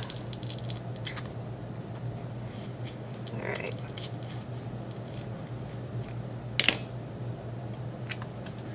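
A thin metal spatula scraping and prying under a pressed blush pan to lift it off its glue, with small scattered clicks and scrapes and one sharper click near the end.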